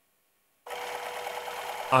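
Small electric motor of a home-built linear drive turning a 6 mm threaded rod to move the carriage. It starts suddenly about two-thirds of a second in and runs steadily with a level hum.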